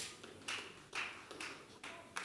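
Four soft hand claps, about half a second apart.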